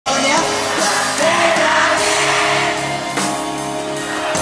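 Live rock band playing, with a singer's voice carried over the instruments through the concert sound system.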